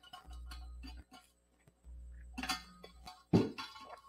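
Small clicks and knocks of paper and art supplies being handled on a tabletop, with a louder rustle late on, over faint background music.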